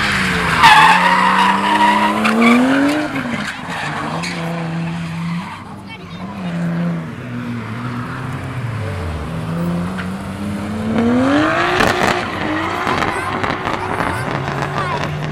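A drift car's engine revs up and down as it slides sideways, with its tyres squealing loudly over the first few seconds and again about eleven seconds in. Near the middle the engine note drops away, then climbs again.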